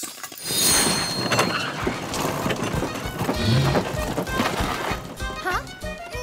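Cartoon score with magic-spell sound effects: a sparkling whoosh starts about half a second in, followed by a busy run of knocks and clatter as the spell carries off a house.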